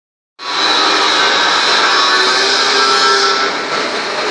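Elscint Model 100 vibratory bowl feeder running: a steady, dense metallic rattle of small steel pins vibrating along the machined stainless steel bowl's track. It starts abruptly about half a second in.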